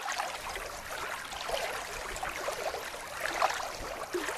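Water splashing and bubbling: a continuous wash with many small gurgling splashes, starting suddenly after a moment of silence.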